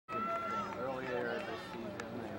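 Overlapping voices of several people talking and calling out, with one longer raised call at the start.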